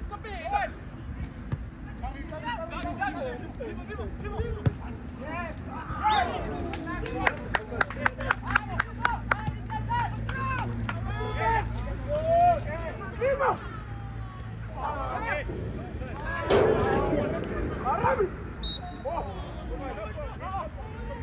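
Players calling and shouting to each other across an outdoor football pitch, in short scattered calls with a louder burst of shouting near the end. A quick run of about a dozen sharp claps comes about seven seconds in, and a low hum sits underneath in the middle.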